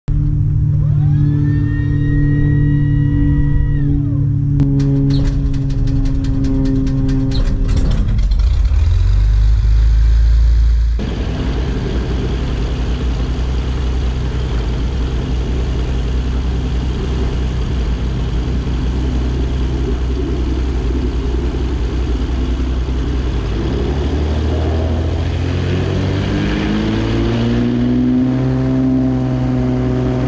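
Intro music with gliding tones over the first few seconds, then a light aircraft's piston engine running steadily on the ground. Its pitch rises about 25 seconds in as the power comes up.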